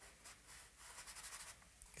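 Compressed charcoal stick scratching across newsprint in a run of quick, short shading strokes, faint.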